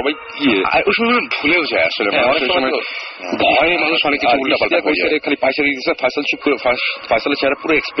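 Speech only: a person talking in Bengali on a radio broadcast.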